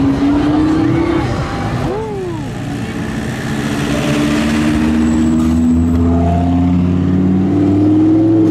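A sports car engine runs under light throttle: one short rising rev, then a long steady pull with its pitch climbing slowly as the car moves off.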